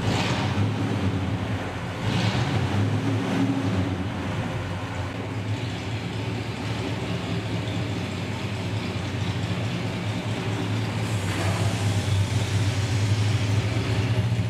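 1963 Dodge 440's engine running as the car pulls away. Its note swells about two seconds in and again near the end.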